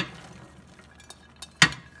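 Diced carrots, onion and celery being tipped from a plastic bowl into a frying pan, with two sharp knocks, one at the start and a louder one about a second and a half in, and light clatter between. No sizzle: the pan and its olive oil are not yet hot.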